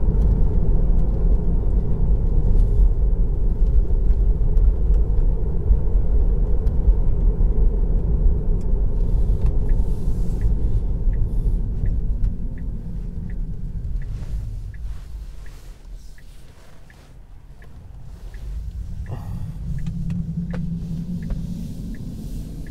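Road and tyre rumble inside the cabin of a Tesla Model 3 electric car: a steady low rumble while driving at about 50 km/h that dies away as the car slows almost to a stop about two-thirds of the way through, then builds again as it pulls away. A light, regular tick, about one and a half a second, runs through the second half.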